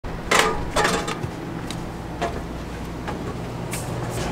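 Footsteps and knocks of someone climbing a motorhome's entry steps and going in through its door: two loud clatters under a second in, then fainter knocks, over a low steady hum.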